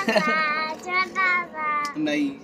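A young girl singing a short phrase of several high, held notes.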